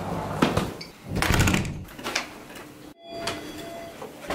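Hotel room door and luggage being handled: knocks and clunks with rustling bags as a backpack and suitcase are carried out. Near the end, after an abrupt break, two short beeps.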